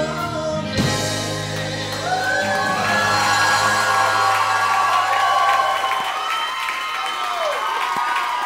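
A live rock band ends its song: a last drum hit, then a held, ringing chord on guitars and bass that dies away about six seconds in. Several wavering voices whoop and cheer over the held chord.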